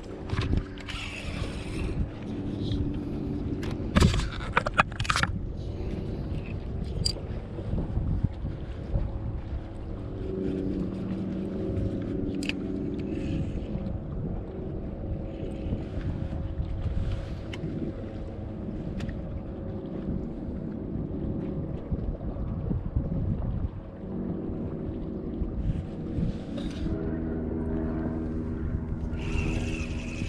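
A boat motor running with a low, steady hum that swells and eases a little, with a few sharp clicks or knocks, the loudest about four to five seconds in.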